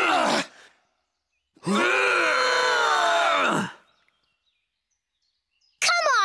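Several cartoon male voices straining and groaning together: a short strain trailing off just after the start, then a longer one of about two seconds, drawn-out and without breaks.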